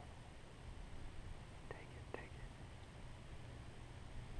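Faint whispering: two short whispered sounds about half a second apart near the middle, over a low steady rumble.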